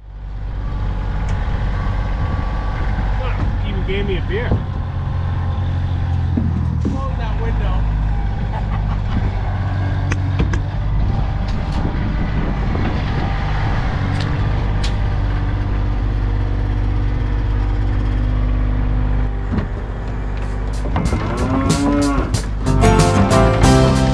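Compact farm tractor's diesel engine running steadily with a deep hum as its front loader lifts a bucket of topsoil. Near the end, soil pours from the bucket into the plastic-lined pickup bed with a rush of crackling, clattering hits.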